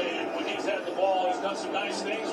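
Quieter background speech from a television football broadcast, the commentary running on between the viewer's remarks.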